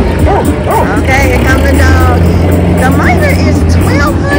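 Slot machine bonus sound effects: a cartoon tractor engine runs with a steady low rumble that grows stronger about a second in, under chiming, gliding game-music tones and surrounding casino noise.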